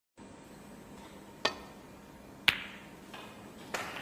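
Snooker balls being struck during a shot: two sharp clicks about a second apart, the second louder with a brief ring, over a hushed arena.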